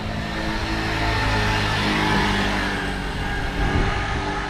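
Small motor scooter with a box on the back riding past close by, its engine getting louder to a peak about two seconds in and then fading as it goes by; a car follows behind it.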